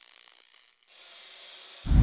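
Logo-animation sound effects: a faint, rapid mechanical ticking that dies away a little under a second in, then a deep swell of sound rising sharply near the end.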